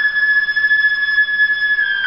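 Solo concert flute holding a single high note steadily, then breaking into a descending run right at the end.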